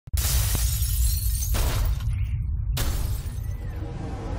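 Sound effects for an animated intro: a deep, steady rumble under three sudden bursts of noise, one at the start, one about a second and a half in and one just before three seconds, the last fading away.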